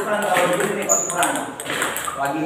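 Table tennis rally: the ping-pong ball clicking off paddles and the table, with men's voices talking over it.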